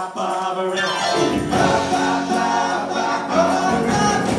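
Live rock band playing a song with electric guitars, drums and keyboard, with sung lead and backing vocals.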